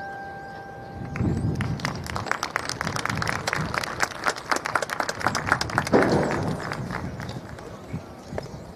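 Sustained mallet-percussion tones fade out. Then comes a stretch of sharp, irregular hand claps mixed with voices, with no band playing, peaking just before the end and dying away.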